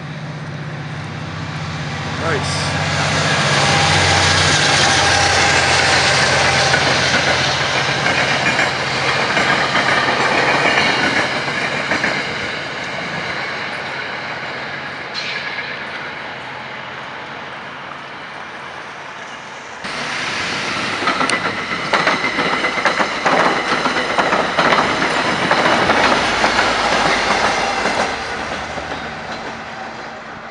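A passing commuter train: the steady rolling noise of steel wheels on rail with clickety-clack, and a low engine hum under the first few seconds. About two-thirds of the way in the sound changes abruptly to a denser run of rail-joint clatter, which fades near the end.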